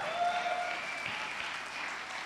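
Congregation applauding in celebration, steady clapping in a church hall, answering the preacher's call to celebrate.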